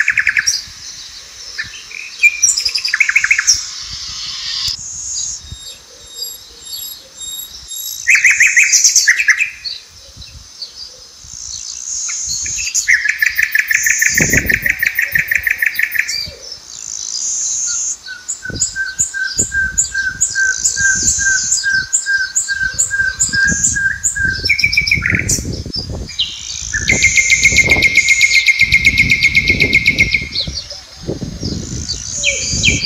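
Wild birds singing and calling, with several different songs following one another and changing abruptly every few seconds: fast trills, very high chirps, and a run of evenly repeated notes at about four a second. Low thumps and rumbles come in under the birdsong in the second half.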